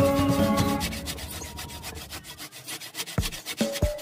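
Hand saw cutting into a block of soft dadap cangkring wood, a quick run of rasping strokes. Background music fades out in the first second, and new plucked notes come in near the end.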